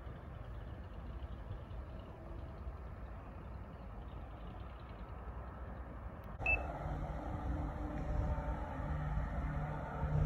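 Low wind rumble on the microphone, then, after a sudden break about six and a half seconds in, the steady drone of a Diamond DA62's twin propellers and diesel engines on approach, growing louder.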